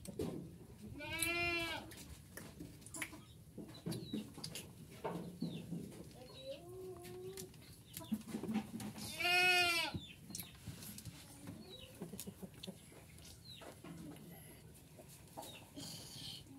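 Goats bleating in a wooden pen: two loud, high bleats that rise and fall in pitch, about a second in and again some eight seconds later, with a softer, lower, wavering call between them.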